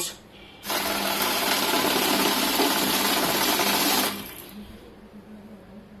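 Paras 1515 currency counting machine feeding a stack of about 60 banknotes through at speed. It makes a rapid, even riffling whir that starts and stops abruptly and lasts about three and a half seconds.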